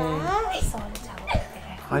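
Speech: a voice talking in drawn-out tones whose pitch slides up and down, with a short pause in the middle.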